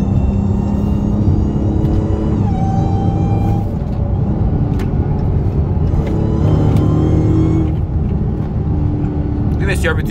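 Dodge Charger SRT Hellcat's supercharged V8 pulling hard, heard from inside the cabin, with a high supercharger whine above the engine note; the pitch drops at a gear change about two and a half seconds in, and the car eases off in the last couple of seconds.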